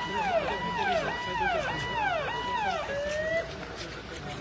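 Electronic vehicle siren sounding in a fast, repeating cycle: a high tone held briefly, then dropping, a little under twice a second. It stops a little over three seconds in with a short rising note.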